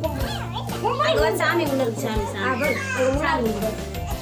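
Young children's high voices, loud and overlapping, with music and a steady low hum underneath.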